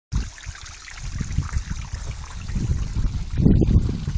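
Soap-solution cooling liquid trickling from a pipe along a greenhouse panel's backbone and running off the plastic film as a continuous splashy trickle, louder near the end.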